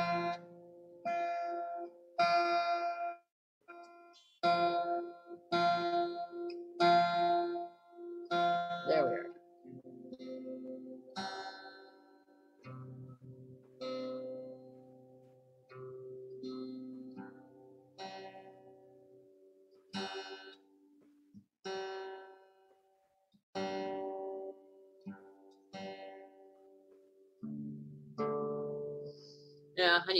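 A guitar being tuned: single strings plucked over and over, about one pluck a second at first, each note ringing briefly. One note bends in pitch about nine seconds in, and slower, lower notes follow. The new strings are slipping out of tune and are being brought back to pitch.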